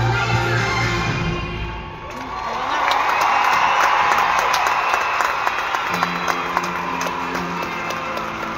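Amplified arena show music with a heavy bass beat fades out about two seconds in. A large crowd then cheers and screams, with scattered claps, and the music comes back more softly near the end.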